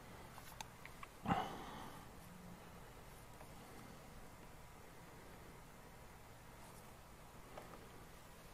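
Quiet room tone with a couple of faint clicks, and one short breath about a second in that fades quickly.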